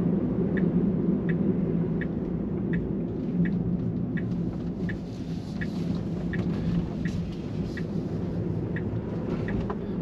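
Tesla turn-signal indicator ticking steadily, about three ticks every two seconds, over a steady low road and tyre rumble inside the car's cabin.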